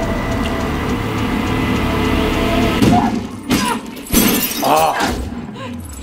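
Horror film trailer soundtrack: a dense, tense music bed, broken by sudden crashing, shattering hits about three and a half and four seconds in.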